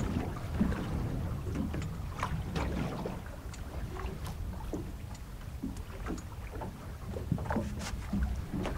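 Wind on the microphone and water against a small boat's hull, a steady low rumble, with scattered light knocks and clicks from handling fishing tackle.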